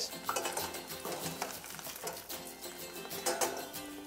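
Tempura-battered fish frying in hot oil in a stainless steel pot: a soft, crackling sizzle with a few clinks of metal tongs against the pot, under quiet background music.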